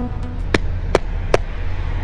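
Motorcycle engine idling steadily, with three sharp hand claps about 0.4 s apart in the middle: the rider's obligatory clap before setting off.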